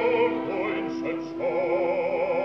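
Opera singing from a 1960 recording: a singer holds notes with wide vibrato over an orchestra. One note breaks off shortly after the start, and a new held note begins about a second and a half in.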